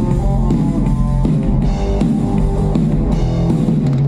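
A punk rock band playing live: electric guitar, bass guitar and drum kit, loud and continuous.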